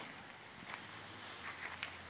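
Faint footsteps with a few soft scuffs, over a low, even background.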